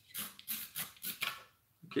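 Razor saw cutting through a resin model part in quick back-and-forth strokes, about three a second, stopping about a second and a half in.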